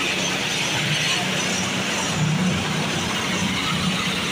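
Asphalt paver's diesel engine running steadily close by, a constant low hum with no change in pace.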